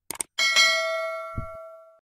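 Subscribe-button animation sound effect: two quick mouse clicks, then a bright bell ding that rings on and slowly fades away. A soft low knock comes partway through the ring.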